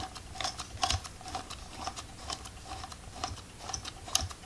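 Rolleicord Vb's film advance knob being turned, giving a run of light, irregular mechanical clicks as freshly loaded roll film is wound on towards the first frame.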